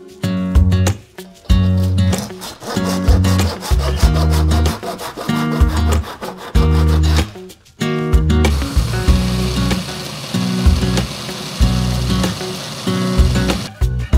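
Acoustic guitar background music. From about eight and a half seconds in, a steady rasping of a hand tool working the cast plug runs under it and stops just before the end.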